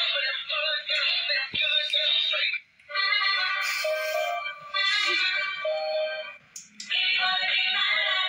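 Dancing Huggy Wuggy plush toy playing an electronic song with synthetic singing through its small built-in speaker, thin and tinny with nothing in the low end. It breaks off briefly twice, near the three-second mark and again past six seconds.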